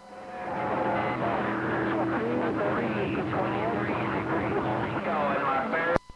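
A distant station's voice received over a radio, weak and hard to make out under steady static hiss, fading up over the first second. It is the fading skip signal the operator says comes and goes.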